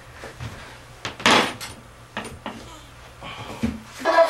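A few scattered knocks and handling noises, the loudest a brief rustle about a second in.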